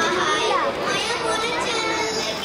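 Several children's voices talking and calling out, overlapping.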